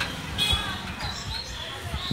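Busy street ambience: voices of passers-by in the background over a steady hum of street noise, with a sharp knock about half a second in and scattered low thuds.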